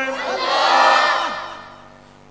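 A large congregation calling out together in unison, answering the preacher's call to say it loudly. The many voices swell for about a second and fade away.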